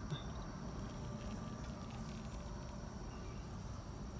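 Faint steady outdoor background: insects trilling in thin high tones over a low, even hum.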